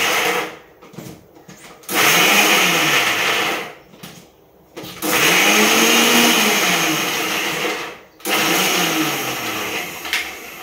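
Electric mixer grinder run in short pulses: a run ending about half a second in, then three more runs of two to three seconds with short gaps between them. In each run the motor spins up and then winds down.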